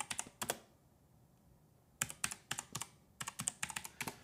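Typing on a computer keyboard: quick runs of keystroke clicks, with a pause of just over a second before two more runs.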